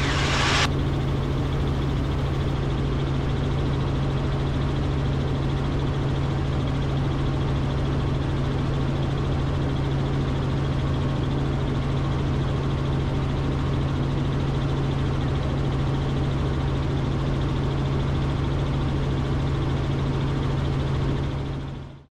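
Cabin noise of a Robinson R44 helicopter in flight: the steady drone of its piston engine and rotors, with a strong low hum. It fades out in the last second.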